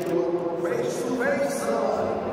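A man speaking into a handheld microphone, amplified, with other voices behind.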